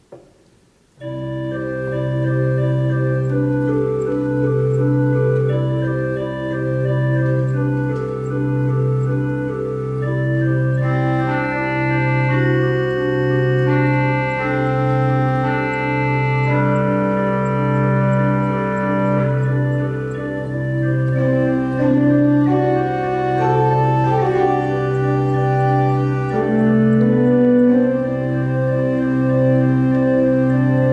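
Three-manual pipe organ, the Southfield organ, playing an improvisation on a theme built around the tritone. It enters about a second in: a low pedal note repeats steadily about once a second under sustained chords and a moving upper line.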